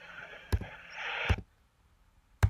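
The sound track of an outdoor video clip playing backwards at speed during Premiere Pro's J-key reverse shuttle: a rustling hiss, broken by two sharp computer-key clicks, that cuts off about a second and a half in.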